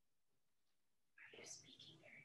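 Near silence, then a little over a second in a brief, faint whisper or hushed voice comes over an open microphone.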